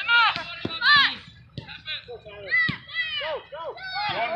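Several high-pitched voices shouting short calls across a soccer pitch, with a few sharp knocks in between.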